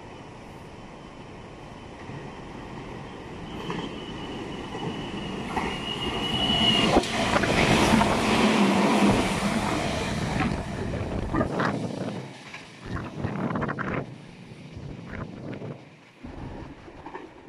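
A red Meitetsu electric train approaches and runs past along the platform. A thin, high, steady tone is heard as it comes in, the sound is loudest about halfway through, and it fades with a run of wheel clicks over the rail joints.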